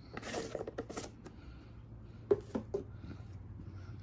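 Curry powder shaken from a plastic jar onto raw goat meat in a stainless steel bowl: a soft rustling patter over the first second, then two light clicks a little past the middle.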